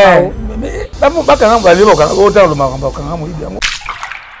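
A person's voice, with a hissing noise under it for about the first second; the sound breaks off briefly just before the end.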